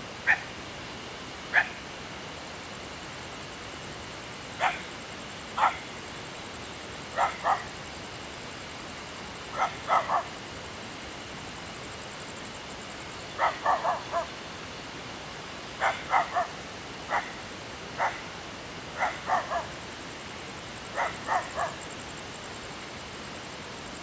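A dog barking repeatedly, some single barks and some quick runs of two to four, over a steady background hiss.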